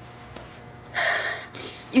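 A crying young woman draws a sharp breath in about a second in, then a shorter breath just before she starts to speak again.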